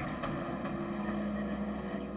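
A steady low drone made of a few held tones that do not change in pitch, fading out near the end.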